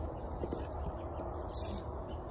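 Steady low room hum with a couple of faint clicks from the painted wooden butterfly being handled and moved.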